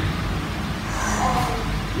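Steady background room noise, a low hum under an even hiss, with faint murmuring about halfway through.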